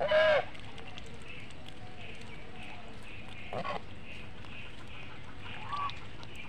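Domestic geese honking: a loud honk right at the start, another about three and a half seconds in, and a softer one near the end, with faint soft calls repeating about twice a second in between.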